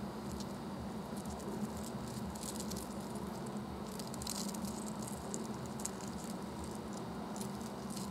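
Faint, scattered light clicks and rattles of small glassy lumps of nutmeg fused with glass shifting against each other in the palm, over a steady low hum.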